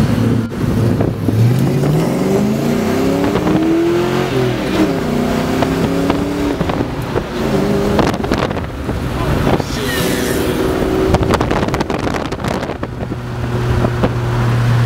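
A car engine accelerating through the gears, its note climbing and dropping back at each gearshift, then settling into a steady hum near the end. Wind buffets the microphone held out of the open window.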